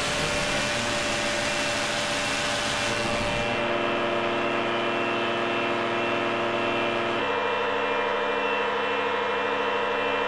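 Electronic synthesizer interlude: a rushing, hissy sweep with gliding tones, then held drone tones from about three and a half seconds in, shifting to a new, warbling chord about seven seconds in.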